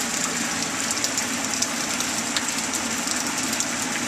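Steady rain falling: a continuous hiss with scattered faint drop ticks, over a low steady hum.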